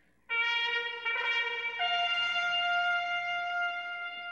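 A trumpet fanfare: a few notes, with the last one held long.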